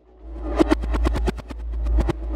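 Electronic music coming in: a deep bass drone under a rapid, irregular run of sharp clicking percussion, swelling up over the first half-second.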